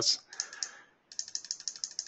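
Rapid run of light plastic clicks from a computer keyboard and mouse being worked, coming a dozen or more a second after a brief pause about a second in.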